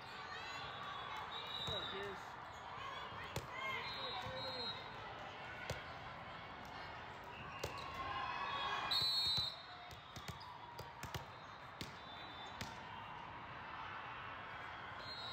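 Busy volleyball hall: many voices talking, with sharp knocks of volleyballs being hit and bounced on the courts. There are short high-pitched squeaks throughout, and the loudest is a brief one about two-thirds of the way in.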